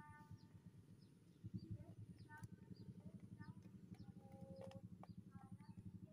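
Near silence: faint outdoor ambience of small birds chirping in short scattered calls over a low, rapidly pulsing rumble.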